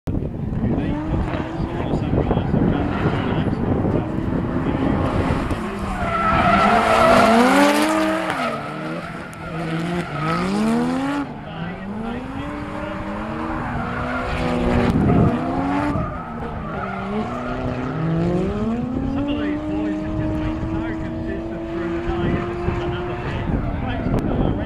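Drift cars sliding in tandem: engines revving up and dropping back over and over as the drivers work the throttle, over tyre squeal, which is loudest about six to eight seconds in.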